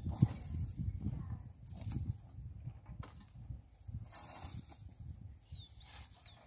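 A garden hoe chopping and dragging through loose, freshly turned soil: a run of dull, irregular thuds and scrapes, with one sharper knock just after the start.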